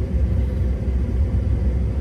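Steady low rumble of a car heard from inside its cabin, the engine running.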